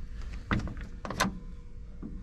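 Door of a 1935 Ford Tudor being opened by its exterior handle: the latch clicks open about half a second in, and a sharper metallic click comes a little after one second as the door swings open.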